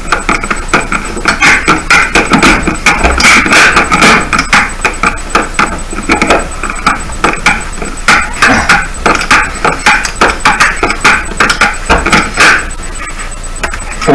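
Wood screw being driven by hand with a screwdriver into a wooden board: a dense, irregular run of creaks and clicks, several a second, as the screw turns.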